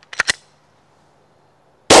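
Two short clicks, then a single loud shot from a Glock 20 Gen 4 10mm pistol at the very end.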